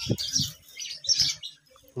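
Small birds chirping repeatedly in short high notes, with a couple of brief low sounds near the start; the chirping dies away in the last half second.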